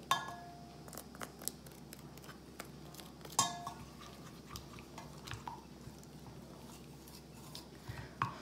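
Spoon stirring in a small steel pot of melted glycerine soap as hibiscus powder is mixed in: faint scraping and light clicks, with two sharper ringing clinks, one at the start and one about three and a half seconds in.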